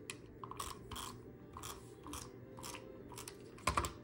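Creative Memories tape runner laying adhesive onto paper in a series of short strokes, about two a second, with a louder knock near the end.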